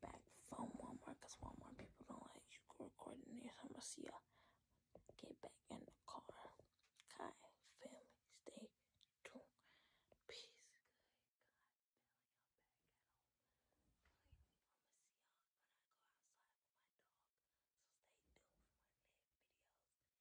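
A person whispering softly for the first ten seconds or so, then near silence.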